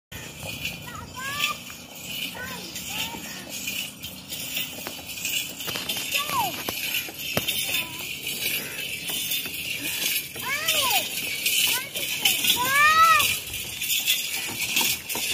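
Bells on a camel's ankle straps jingling as it walks pulling a wooden cart. Short high calls that rise and fall come in several times, loudest near the end.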